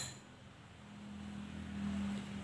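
A steel spoon clinks once against a small glass bowl right at the start, then a faint low steady hum that swells slightly about a second in.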